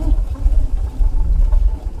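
A car driving along a rural road, with a steady low rumble of engine and road noise.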